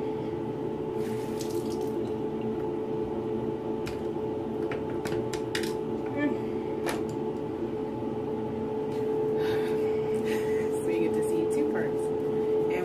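Bathroom tap running into a sink, with a few light clicks and knocks, over a steady background hum.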